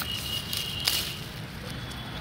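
Outdoor background noise while walking with a handheld phone: a low steady rumble with a couple of soft clicks or footfalls, one near the start and one about a second in, and a faint thin high tone in the first half.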